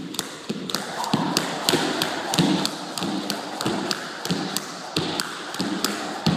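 Skipping rope doing double unders. The rope ticks sharply against the floor twice for every jump, about three ticks a second, and the shoes land with a soft thud about one and a half times a second.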